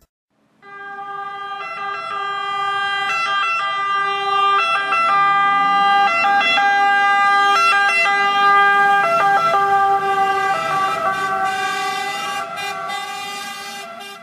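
Italian fire engine's siren sounding, a steady pitched tone with a rich, buzzy edge, growing louder as the truck approaches and fading as it passes.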